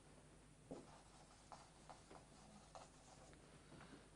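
Faint squeaks and scratches of a felt-tip marker writing on a whiteboard, in a series of short, separate strokes.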